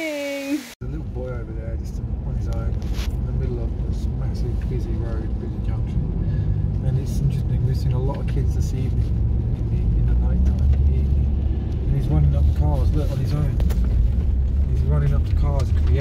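Steady low rumble of a car driving, heard from inside the vehicle, with faint voices over it. It starts abruptly less than a second in and grows louder over the second half.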